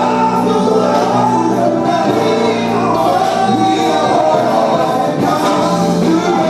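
A male gospel vocal group singing live, several voices together, with band accompaniment including electric bass.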